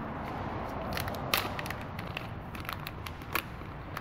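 A packet of LED bulbs being opened by hand: the packaging crinkles steadily, with a few sharp clicks, about a second and a half in and again near the end.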